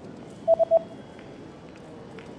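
Three short electronic beeps at one pitch in quick succession, over a steady background of train station ambience.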